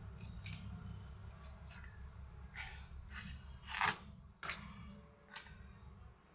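A knife peeling cassava root: a series of about seven short scraping cuts through the peel, the loudest a little before four seconds in, over a steady low hum.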